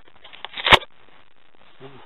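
A short scraping noise that ends in a sharp click about three-quarters of a second in, followed near the end by the start of a man's voice.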